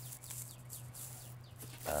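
Small birds chirping with quick, high calls over a steady low hum.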